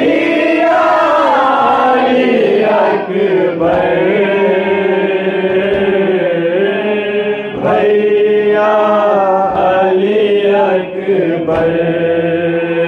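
A man's voice singing a noha, a Shia lament for Ali Akbar, unaccompanied. Long drawn-out notes bend and waver, with brief breath pauses about every three to four seconds.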